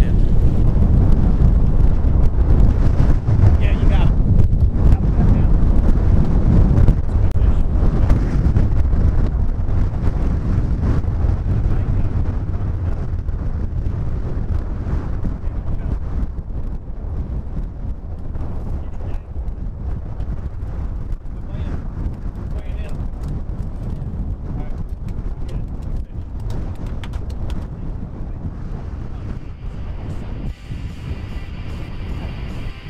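Strong wind buffeting the microphone: a heavy, low rumble, loudest for the first ten seconds or so and then easing off gradually.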